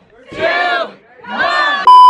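Two loud, drawn-out excited yells, each about half a second long. Near the end a loud steady electronic beep cuts in abruptly: the test tone of a TV colour-bars screen, louder than the yells.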